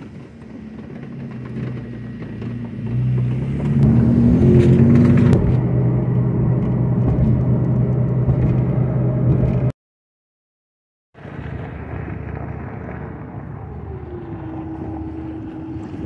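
A car engine revving, its pitch rising about four seconds in, then running steadily. The sound drops out completely for about a second and a half. A quieter, steady hum follows, with a constant tone joining near the end.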